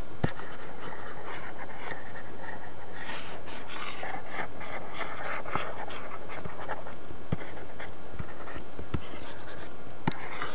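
Breathy, panting-like noise close to the microphone over a steady hum and hiss, with a few sharp clicks spread through it.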